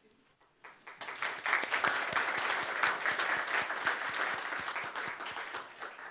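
An audience applauding: after a brief quiet, many hands start clapping about a second in and keep up a dense, even clapping.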